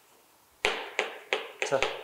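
Chalk writing on a blackboard: a quick series of sharp taps and short strokes as the letters are written, starting about half a second in.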